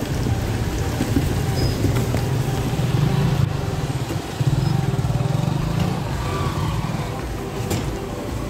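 Motorcycle and scooter engines running close by in a flooded street, a steady low drone that swells about three seconds in and again for a stretch past the middle.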